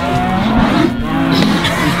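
Several cattle mooing at once, their long low calls overlapping.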